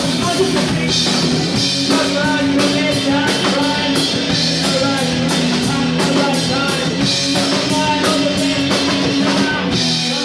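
A rock band playing live, with electric guitars over a drum kit keeping a steady beat.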